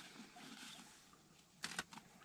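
Faint rustling and handling noise from items being pulled out of a soggy, mud-caked bag, including a charging cable, fading almost to quiet. One short brushing rustle comes near the end.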